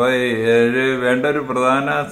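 A man talking, drawing out one long vowel for most of the first second before going on in ordinary syllables.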